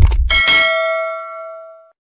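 Subscribe-button animation sound effect: a couple of quick clicks, then a bright bell ding that rings and fades away over about a second and a half.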